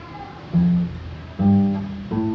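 Acoustic guitar played twice, about a second apart: a short note or chord, then a fuller chord that rings on. It is an alternative, simplified fingering of an F chord.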